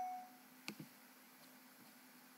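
A single computer mouse click, a quick double tick of button press and release, about two-thirds of a second in. The rest is faint room hiss.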